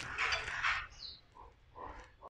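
Faint, uneven sizzling of egg batter and bread frying in an oiled non-stick pan over a low flame, dying away after about a second.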